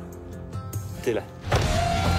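Film trailer soundtrack: quiet music under a brief spoken exchange, then a sudden loud hit about one and a half seconds in that carries into louder music with a held tone.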